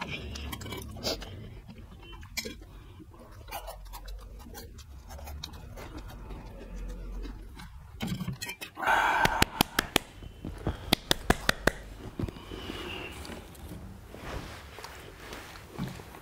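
Snack cheese balls being chewed, with a run of sharp clicks and crackles from about nine to twelve seconds in.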